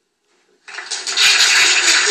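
Silence at first, then a loud, steady rushing noise rises about two-thirds of a second in and carries on.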